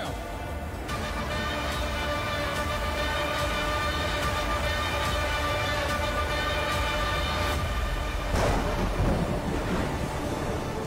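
Dramatic film score: a sustained chord over a deep rumble, with a soft beat a little under a second apart, building to a louder swell near the end. Rain and thunder effects sit under the music.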